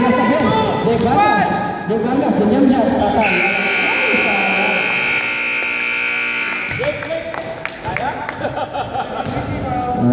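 Gymnasium scoreboard buzzer sounding one steady, high electronic tone for about three and a half seconds, starting about three seconds in and cutting off abruptly: the game clock running out at the end of the period. Players' voices and a basketball bouncing on the hardwood are heard around it.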